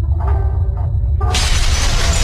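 Logo-sting sound effects: a deep, steady low rumble, with a loud shattering crash breaking in a little over a second in and carrying on.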